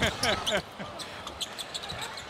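Brief laughter from the broadcast booth, then the steady hum of an arena with a basketball being dribbled on the hardwood court.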